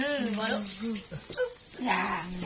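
A woman's drawn-out, wavering playful "hue, hue" crooning to a toddler, sliding down in pitch and held for almost a second. A brief sharp click comes about a second and a half in.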